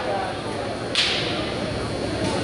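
Murmur of voices in a large gym with one sharp slap about a second in, ringing briefly in the hall.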